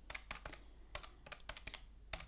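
Keys of a Milan desktop calculator being pressed in quick succession: a rapid, irregular run of faint plastic clicks, several a second.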